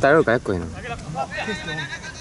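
Loud, wavering shout in the first half second, followed by scattered calls from several voices.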